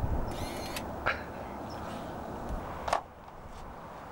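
A compact point-and-shoot film camera winding on after a shot: a short motorised whir of about half a second, followed by a sharp click about a second in and another just before three seconds, over steady outdoor background hiss that drops abruptly after the second click.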